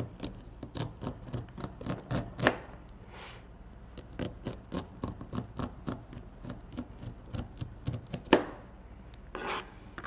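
Chef's knife slicing kernels off a fresh corn cob held on end on a cutting board: a quick run of short, crisp cuts, several a second, with a brief pause about three seconds in and a louder stroke near the end.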